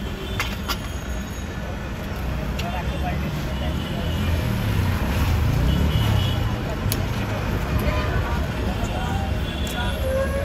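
Street traffic: a steady low rumble of passing vehicles that swells for a few seconds mid-way, with background chatter and a few sharp clicks.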